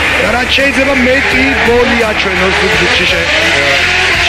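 Nissan Silvia drift car's engine revving hard through a drift, its pitch rising and falling and climbing in one long rise near the end, with a voice talking over it.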